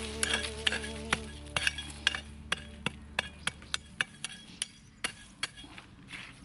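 A small hand weeding hoe chopping and scraping into dry soil, a sharp tick about three times a second that slows toward the end.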